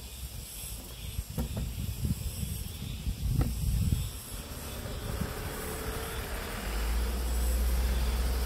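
A small truck approaching along the road below: its engine and tyre noise builds from about five seconds in and is loudest near the end. Under it, a low fluctuating rumble on the microphone with a couple of faint knocks, and a faint high insect buzz.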